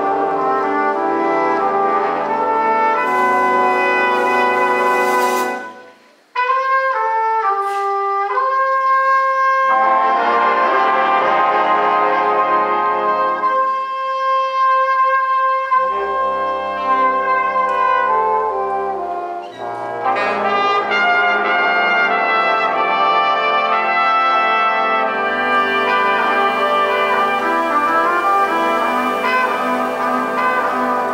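High school jazz band playing, led by trumpets and trombones over drums. The band cuts off abruptly about six seconds in and comes straight back with a thinner melodic passage, and the full band returns around the middle.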